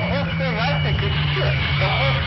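An unintelligible, voice-like sound with gliding pitch over a steady low buzzing hum and a thin high tone.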